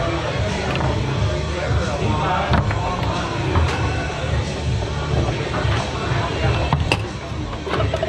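Background music and room chatter, broken by a few sharp knocks of a foosball being struck by the player figures and hitting the table, the clearest about seven seconds in.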